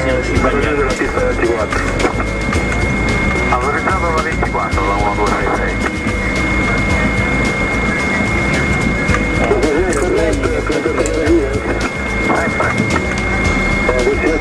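Airliner cockpit noise while taxiing: a steady low rumble with a constant high-pitched whine running underneath.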